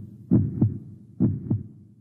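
Heartbeat sound effect: steady lub-dub double beats, low and dull, repeating a little faster than once a second.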